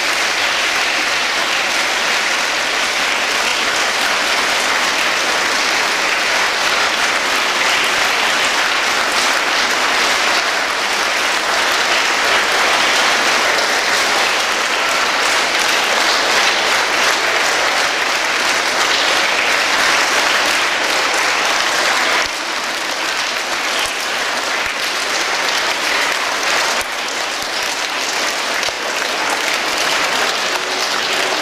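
Sustained applause from a large audience of schoolchildren, a dense, steady clapping that eases slightly about two-thirds of the way through.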